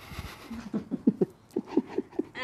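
A person laughing in short breathy bursts, about four a second, with a brief rustle of movement at the start.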